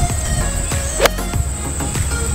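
Forged 52-degree MacGregor VIP gap wedge striking a golf ball on a full swing: one sharp, crisp click about a second in.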